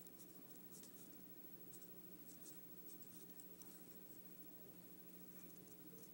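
Faint pencil scratching on paper in short, irregular strokes, over a low steady hum.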